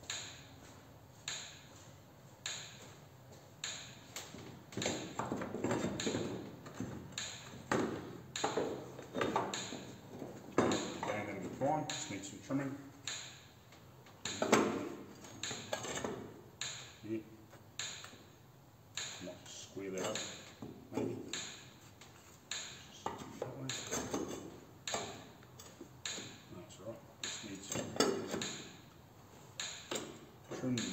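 Electric fence energizer ticking about once a second, with irregular clanks of steel bracing being handled and fitted into the car body.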